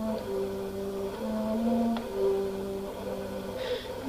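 Alto flute playing soft, low sustained notes that step slowly between pitches, with a breath drawn near the end.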